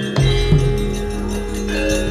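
Javanese gamelan playing: bronze metallophones and gongs struck in a steady pulse, with a deep gong stroke about a fifth of a second in that keeps ringing under the other notes.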